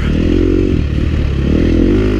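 KTM 350 XC-F dirt bike's single-cylinder four-stroke engine running under throttle on a dirt trail, its pitch dipping slightly about a second in and climbing again.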